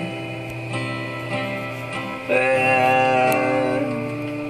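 Acoustic guitar strumming chords, with a man's voice coming in a little past halfway to hold one long sung note.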